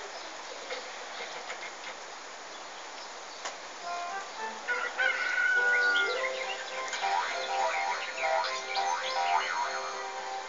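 Steady rain falling on a wet street. About halfway in, pitched calls or notes come in over the rain and become the loudest sound, beginning with one long held tone and followed by many short ones.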